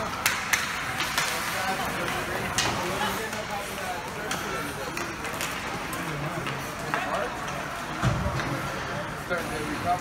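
Ice hockey play in a rink: skate blades scraping across the ice and sharp clacks of sticks and puck, repeated irregularly, under indistinct voices, with a low thud about eight seconds in.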